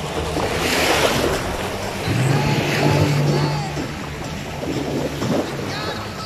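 Small waves washing onto a sandy shore, mixed with background music. A low steady hum rises for a couple of seconds partway through.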